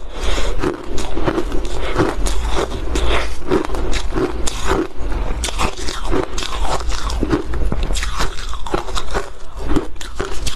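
A mouth biting and chewing refrozen ice: a dense, irregular run of sharp, crisp crunches as the frozen block is bitten and ground between the teeth.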